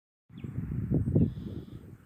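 Low, uneven rumble of noise on a phone's microphone outdoors, swelling about a second in and dying away before the end, with a faint high chirp near the start.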